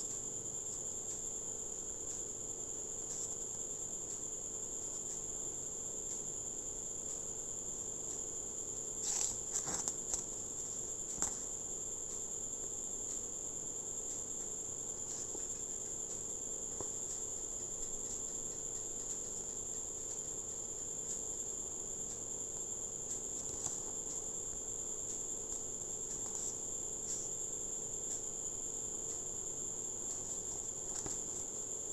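A steady, high-pitched insect chirring in the background. A few brief rustles and clicks of paper come about nine to eleven seconds in as the CD booklet's pages are handled.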